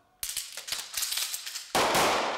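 Pistol gunfire on a firing range: a quick run of many fainter shots starting about a quarter second in, then a much louder close shot near the end whose report rings on and fades slowly.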